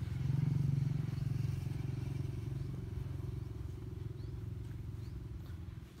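A small engine droning steadily with a fine, fast pulse, loudest about a second in and slowly fading.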